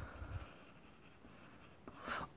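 Faint scratching of a yellow Dixon Ticonderoga graphite pencil writing a word on paper.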